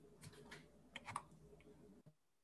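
Near silence: faint room tone with a few soft clicks, four or five of them between a quarter of a second and a little over a second in.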